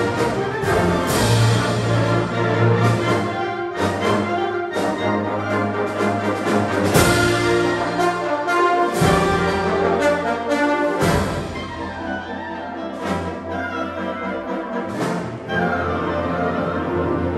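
A high school symphonic band of woodwinds, brass and percussion playing held chords that change every second or so, growing softer about two-thirds of the way through.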